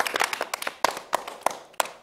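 A small group clapping: scattered, uneven hand claps, several a second, thinning out near the end.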